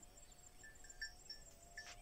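Near silence with faint insects chirring: a rapid, high pulsing throughout, and a few short faint chirps about a second in.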